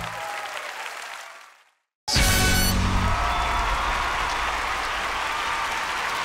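Theatre audience applauding as the final sung note ends, fading out to a second of silence. About two seconds in, a brief musical chord sounds and loud audience applause starts again and runs on.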